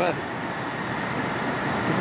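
Steady background din of a factory machine shop: an even noise with no distinct knocks or tones standing out.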